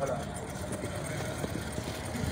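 Street background noise with a motor vehicle engine running steadily in a low hum.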